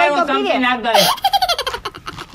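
A woman's high-pitched voice, speaking with a wavering pitch, then giggling in quick bursts about a second in, trailing off before the end.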